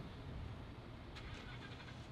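Faint steady low rumble of distant road traffic.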